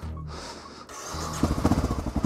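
Honda NX650 Dominator's single-cylinder engine running, its low rumble growing louder and more pulsed about halfway through.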